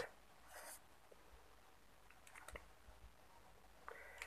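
Faint scratching of a pen on paper as an equation number is written and circled, followed by a few light clicks.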